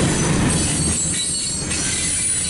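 Mixed freight train cars rolling steadily past, with the wheels rattling on the rails and a faint high wheel squeal.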